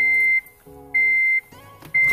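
Electronic beeping from a car's electronics as the ignition is switched on: a single high tone in beeps about half a second long, repeating about once a second, with a faint lower hum beneath.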